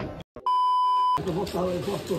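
A censor bleep: one steady, high pure beep lasting under a second, with the audio cut to silence just before it. A man's speech resumes right after.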